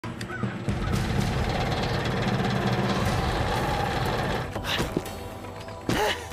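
Cartoon sound effect of a large electric fan running with a steady, rattling mechanical whir, mixed with background music. The whir stops about four and a half seconds in, followed by a short pitched cry.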